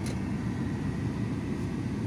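A car running, heard from inside the cabin: a steady low rumble.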